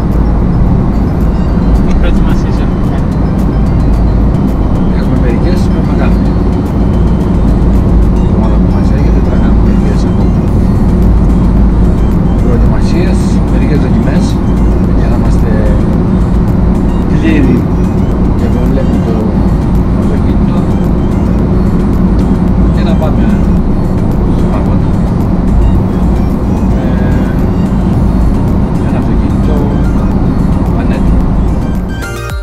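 Steady road and engine rumble inside a moving car's cabin, with conversation and background music over it.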